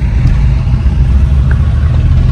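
Car running on the road, heard from inside the cabin: a steady low rumble of engine and road noise.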